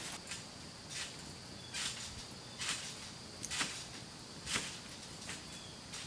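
Faint, distant trampoline sounds: the springs and mat give a short noisy stroke about once a second as a person bounces and tumbles, over a steady faint high tone.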